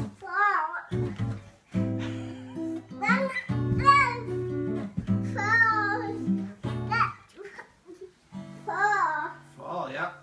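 Acoustic guitar played in held, strummed chords, stopping and starting again several times, with a young child's high voice calling and singing over it in short phrases.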